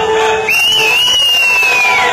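A person whistles one long note, starting about half a second in, wavering up briefly and then sliding slowly down in pitch, over the show's music.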